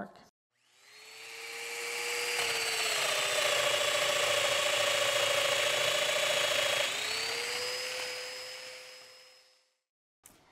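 Festool Domino joiner spinning up and running. Its pitch drops for about four seconds as the cutter plunges into the end of an ambrosia maple leg to cut a loose-tenon mortise, rises again as the cutter is withdrawn, then the motor is switched off and winds down.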